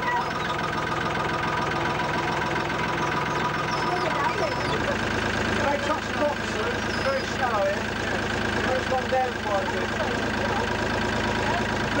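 A river boat's engine running steadily, a constant droning hum under scattered voices.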